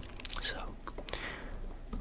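A man whispering close to a microphone: one whispered word, then a short pause.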